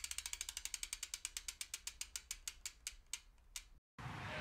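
Bicycle freewheel hub ratchet clicking as a wheel coasts down: faint, even clicks at about ten a second that slow steadily to a few widely spaced last clicks, then stop.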